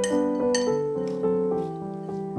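Gentle piano music, with two sharp glassy clinks in the first half-second: chopsticks knocking against a glass mixing bowl.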